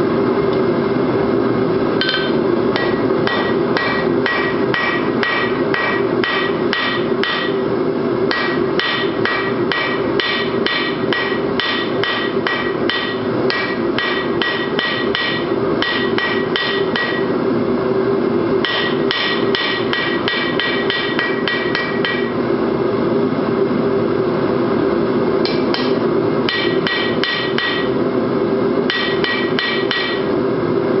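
Hand hammer striking hot steel round bar on an anvil, flattening the bar's end into a fishtail. The blows come in runs of about three a second, each with a bright ring, with short pauses between runs. A steady roar from the forge runs underneath.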